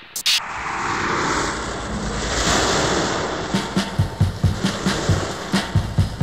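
Tape-collage musique concrète: a swelling wash of noise, then a fast drum beat comes in about halfway through and runs on under it.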